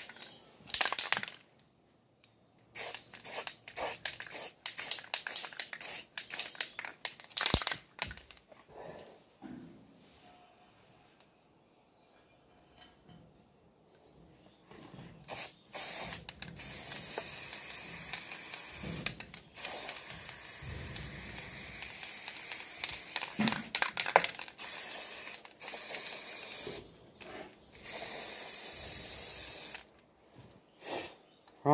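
Aerosol spray-paint can hissing in short bursts for the first several seconds, then, after a pause, in long steady sprays with brief breaks as a coat of paint goes on.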